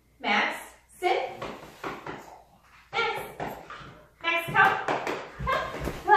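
Speech: a woman talking in short phrases, with a few low thumps near the end.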